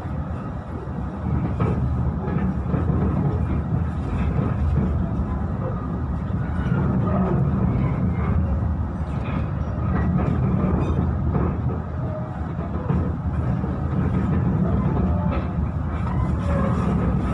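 Steady low rumble of a passenger train carriage running along the rails at speed, heard from inside the carriage.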